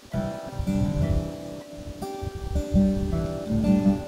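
Acoustic guitar played on its own, no voice: strummed chords ringing, with the chord changing about two seconds in.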